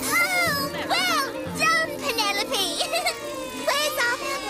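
High-pitched cartoon children's voices giving a string of short wordless cries and squeals, over steady background music.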